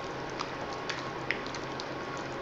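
Spoon stirring thick canned chili in a slow-cooker crock, faint, with a few light clicks of the spoon against the crock over a low steady hum.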